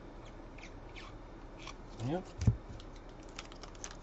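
Trading cards being flicked through by hand, a string of light clicks and card-edge ticks, with one louder tap about two and a half seconds in.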